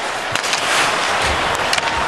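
Ice hockey arena crowd noise, swelling a little about a third of the way in, with a few sharp clacks of sticks and puck on the ice.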